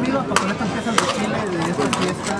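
Horses' hooves clopping on a paved street: a few sharp, irregular strikes over a crowd's chatter.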